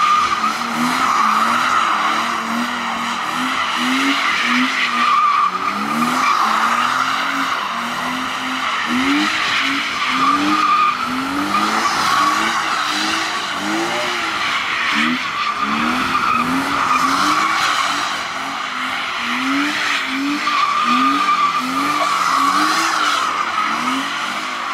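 BMW 325i (E36) with its 2.5-litre straight-six revving up and down in repeated short rises while the rear tyres squeal continuously as the car drifts in circles on wet asphalt.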